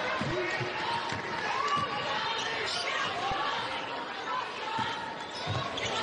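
A basketball dribbled on a hardwood court, bouncing about twice a second, over the steady murmur and chatter of an arena crowd.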